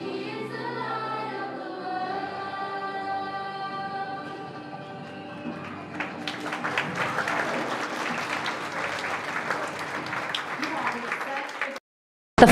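Children's group singing a song, which ends about halfway through; the congregation then applauds until a brief cut-out just before the end.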